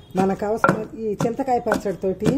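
A pestle pounding cucumber chutney in a large stone mortar: dull, repeated thuds into the wet paste, about two strokes a second, with a woman's voice over them.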